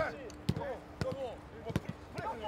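Soccer balls being kicked on grass in a passing drill: three sharp thumps, about half a second in, a second in and near the end, with players' voices around them.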